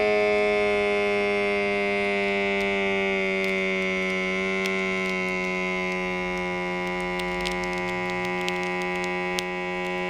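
Small cuff-inflation pump of a Braun wrist blood-pressure monitor running with a steady buzz that sags slightly in pitch as the cuff fills. It cuts off suddenly just at the end, as inflation finishes.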